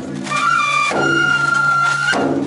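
Japanese festival music: a bamboo transverse flute plays a long held note, with sharp percussion strikes about once a second under it.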